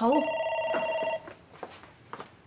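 Desk telephone ringing: one ring, a steady tone lasting about a second, starting just after a spoken word.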